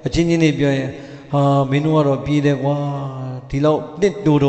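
A Buddhist monk's voice intoning a sermon in a chant-like recitation, held on a nearly level pitch. It runs in phrases with short breaks about a second in and near the end.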